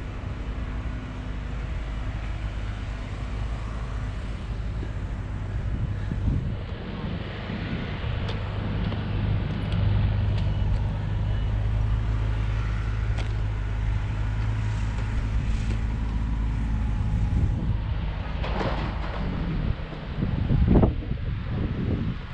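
A motor vehicle or machine engine running steadily, a low hum that grows louder about a third of the way in and eases off later. Short uneven rustles and knocks come near the end.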